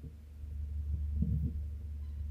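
Steady low electrical hum in the recording, swelling a little through the middle, with a faint brief low sound a little after a second in.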